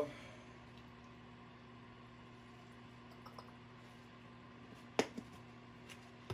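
Quiet steady hum with a few faint ticks, then one sharp click about five seconds in and a smaller one just after, from a squirt bottle and jars being handled on a workbench.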